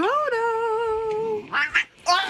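A cat's long, drawn-out yowl that rises at the start, then holds one slightly wavering pitch for about a second and a half.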